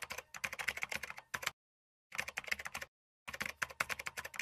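Rapid computer keyboard typing, keystrokes clicking in quick runs, heard in three stretches separated by short gaps of complete silence.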